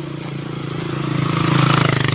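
A motorcycle passes close by, its engine running at a steady pitch. It grows louder to a peak about one and a half seconds in, then begins to fade as it goes past.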